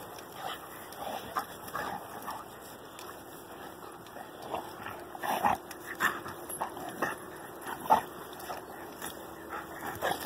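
Rottweilers (a mother and her six-month-old puppies) play-fighting, giving short, irregular dog vocalisations through the scuffle, loudest about halfway through and again near eight seconds in.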